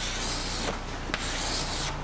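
Chalk drawing circles on a chalkboard: a continuous scratchy rubbing of the chalk stick on the board, with a couple of brief clicks partway through.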